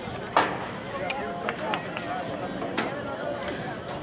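Scattered, faint voices of people talking, with a sharp knock about half a second in.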